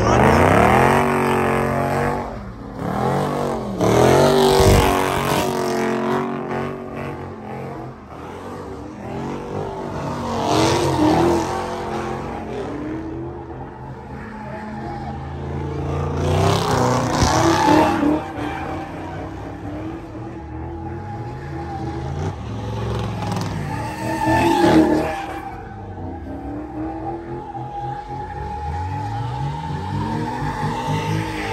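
A car spinning donuts: its engine revving hard in repeated surges that climb and fall every several seconds, with its tyres screeching on the asphalt. A steady high squeal holds through the last third.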